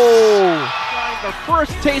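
A man's long, drawn-out exclaimed 'Oh', falling in pitch and fading out within the first second, followed by background music coming in.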